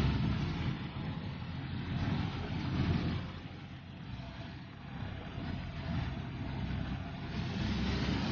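Bulls' hooves on dry, dusty ground as fighting bulls trot through a narrow gate. It makes a low, irregular rumble that eases off in the middle and builds again toward the end.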